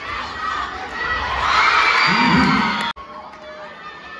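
Large crowd of spectators in an indoor sports hall shouting and cheering during a kabaddi match, swelling to its loudest about two seconds in with a single voice shouting above it. The sound then cuts off suddenly about three seconds in, leaving a quieter murmur.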